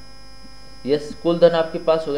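Steady electrical mains hum running under the recording. From a little under a second in, a person's voice speaks over it.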